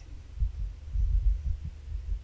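A low, uneven rumble with soft thumps and no voice: low-pitched noise picked up by the narrator's microphone.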